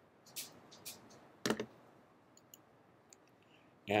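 A few short, soft clicks over quiet room tone, the loudest about a second and a half in, with fainter ticks after it.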